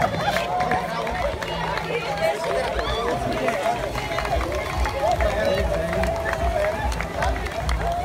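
A crowd of runners and spectators: many voices mixed with the footsteps of people running past on pavement.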